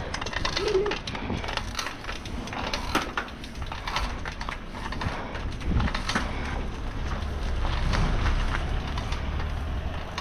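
Bicycle riding noise: wind rumbling on the camera's microphone while riding, with tyre noise on asphalt and frequent rattling clicks.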